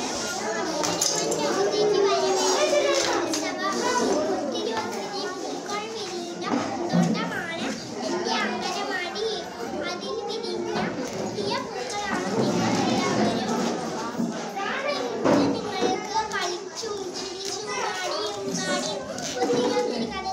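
A young girl speaking without pause in Malayalam, giving a short greeting speech, with the voices of other children in the background.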